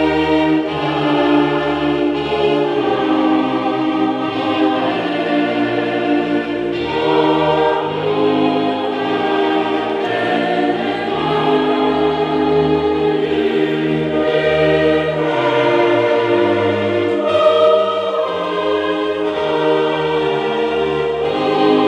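A congregation choir singing a hymn together, led by a conductor, with held notes that change every second or two and no break.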